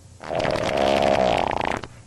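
A long fart noise, a rapid rattling buzz lasting about a second and a half, starting just after the beginning and cutting off sharply.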